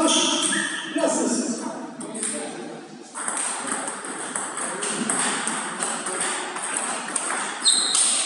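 Table tennis rally: the ball ticking back and forth off the paddles and the table in quick succession, over the noise of a hall with other tables in play.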